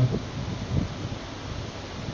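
Steady background noise, a soft even hiss, in a short pause between spoken phrases.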